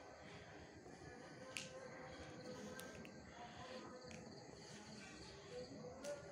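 Quiet night ambience: faint distant music and a steady high insect chirr, like crickets, with a single sharp click about one and a half seconds in.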